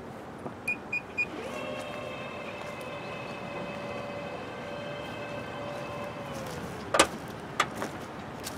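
2017 Nissan Murano's power liftgate closing: three short warning beeps, then the liftgate motor whines steadily for about five seconds as the gate lowers. It ends in a sharp clunk as the gate latches shut, followed by a smaller click.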